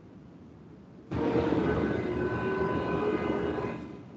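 A burst of steady, engine-like noise with a few faint steady tones, coming through a video-call participant's open microphone. It starts abruptly about a second in and fades out just before the end.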